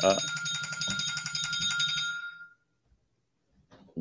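A short electronic ring or chime of several steady high tones, lasting about two seconds and fading out, over a man's brief 'uh'.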